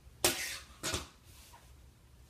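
Wooden yardstick being moved and set down on the fabric-covered work table: a sharp clack about a quarter second in, then a second, shorter knock just under a second in.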